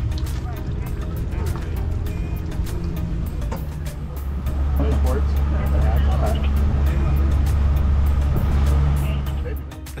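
A small tour boat's motor runs with a steady low drone. It takes over and grows louder about halfway through as the boat gets underway. Before that, voices and light clicks are heard.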